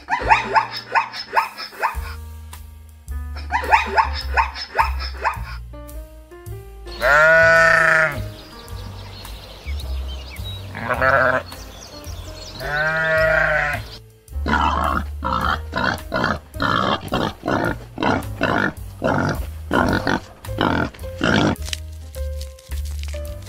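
Animal calls over background music: two short runs of rapid pulsed calls, then three long bleats from a Barbary sheep, the first the loudest, then a long run of rapid pulsed calls.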